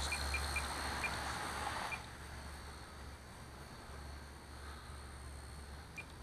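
Blade Nano CP S micro RC collective-pitch helicopter hovering a little way off: a faint whirring hiss of its small electric rotors, louder in the first two seconds and then quieter, with a few short high chirps early on.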